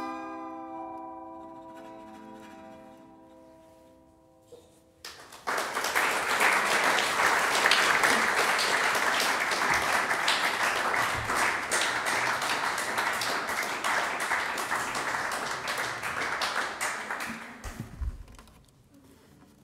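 Final notes of an acoustic Weissenborn lap steel guitar ringing and slowly dying away, then about five seconds in the audience breaks into applause that lasts about twelve seconds and is the loudest sound.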